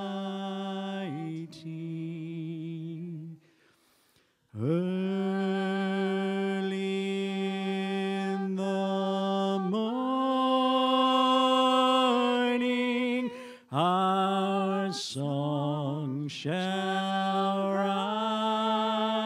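Worship singing: voices holding long, slow notes with a wavering vibrato, with a short break about four seconds in before the singing resumes.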